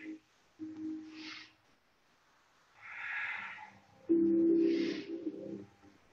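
A person breathing audibly in and out, with the tongue held against the palate: a short, higher hiss about a second in and near five seconds, and a longer breath about three seconds in. Soft background music plays underneath and gets louder about four seconds in.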